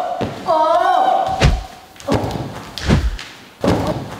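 A short high, wavering vocal sound in the first second, then four heavy thuds about two-thirds of a second apart, like bodies landing from flips on a hard floor.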